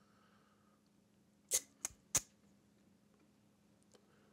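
Three short, sharp clicks, about a third of a second apart, starting about a second and a half in, over near silence with a faint low hum.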